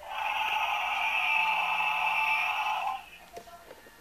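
Electronic roar from a toy Tyrannosaurus rex's small built-in speaker, triggered by tilting its head. One long, thin roar with no bass lasts about three seconds and then cuts off.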